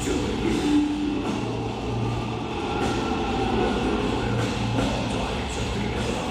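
Death metal band playing live: heavy distorted guitars, bass and drums at a steady loud level, with a thick, booming low end.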